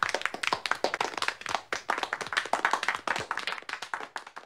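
A small audience clapping, the separate claps easy to pick out, gradually thinning and fading toward the end.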